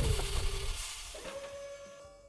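Sci-fi blast-door transition sound effect: a loud whoosh with a deep low end at the start, a hiss swelling about a second in, then fading, over a held note of background music.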